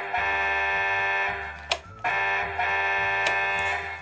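Electronic horn sound effect from a Tonka toy fire engine's speaker: two long, steady, buzzy blasts, each about one and a half seconds, with a short gap between them.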